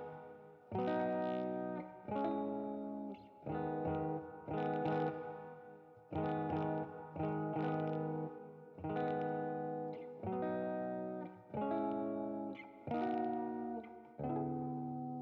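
Background music: electric guitar strumming chords about once every second and a half, each chord left to ring and fade before the next.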